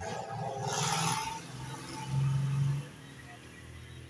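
A motor vehicle passing on the nearby road: engine and tyre noise swells in the first second and a half, then a louder low steady engine note from about two seconds in, cut off just before three seconds.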